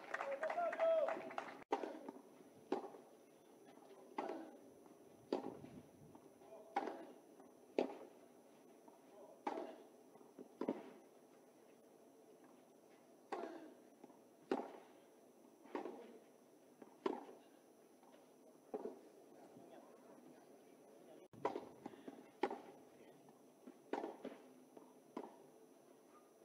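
Tennis rackets striking the ball back and forth in baseline rallies: a sharp pock about every second and a half. There is a short break between points about halfway through.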